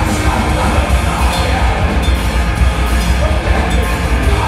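A rock band playing live and loud in a heavy style: electric guitar, bass guitar and a drum kit with crashing cymbals.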